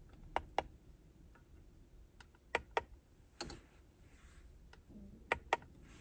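Plastic buttons on a handheld Kingbolen YA200 OBD2 code reader clicking as they are pressed to step through its menu. The faint clicks come in quick pairs, three times, with one softer click between.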